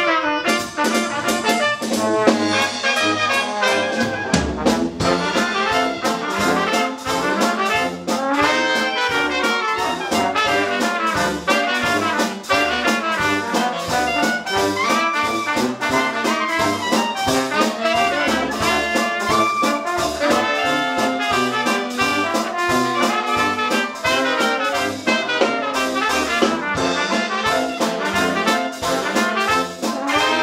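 Traditional jazz band playing live: trumpet, trombone and clarinet in ensemble over a steady beat from the rhythm section. The band comes in right at the start.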